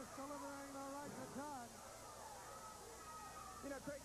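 A voice with long, drawn-out and wavering sounds: one held pitch for about a second near the start, then shorter rising-and-falling ones.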